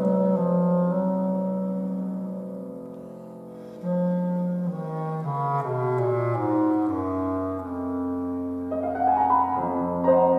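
Bass clarinet and piano playing a classical duet. A held passage fades away about three seconds in, then a new phrase enters about four seconds in, its notes stepping down low before climbing again near the end.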